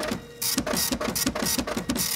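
Glitchy electronic sound effects for an animated logo outro: a rapid, even stutter of digital blips and hissy bursts, several a second, after a brief quieter dip at the start.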